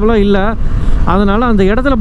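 A man talking, with a short pause about half a second in, over steady wind and road noise from a moving motorcycle.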